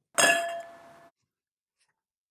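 Pint glass of beer tapped against the camera for a cheers: a single clink that rings with a few clear tones and fades out within about a second.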